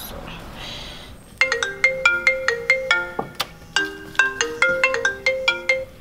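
Mobile phone ringtone for an incoming call: a quick melody of short, bright, plucked-sounding notes that starts about a second and a half in and stops just before the end.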